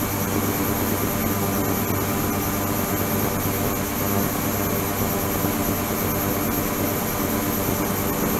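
Ultrasonic cleaning tank running: a steady buzzing hum with a thin high whine above it and a constant noisy hiss, unchanging throughout.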